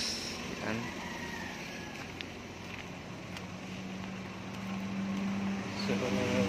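Suzuki Carry DA63T's 660cc K6A three-cylinder engine idling with a steady low hum, a little louder near the end.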